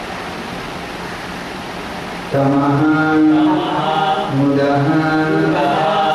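A steady hiss, then a man's voice chanting a Sanskrit prayer over a microphone, starting a little over two seconds in, in two long, held phrases.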